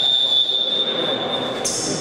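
Referee's whistle blown in one long, steady, high blast that stops sharply about one and a half seconds in, followed near the end by a brief, higher squeak.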